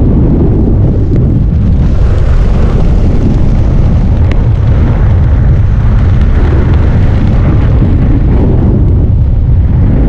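Airflow buffeting the camera microphone during the parachute descent: a loud, steady rumble, strongest in the low end, with no break.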